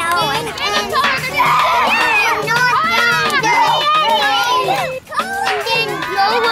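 A crowd of children's voices chattering and shouting over one another, with many voices at once.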